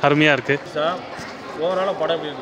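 Speech: a man talking in short phrases with pauses between them.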